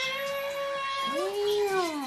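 A cartoon cat's voice from a television: two long held calls, the first steady and the second arching up and then falling away near the end.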